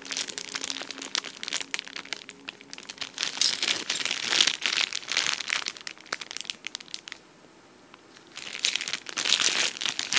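Clear plastic packaging crinkling and crackling in irregular bursts as plastic cutlery is handled inside it, with a pause of about a second some seven seconds in.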